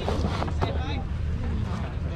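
Wind buffeting an action-camera microphone outdoors, giving a steady low rumble, with the voices of people nearby faintly heard over it.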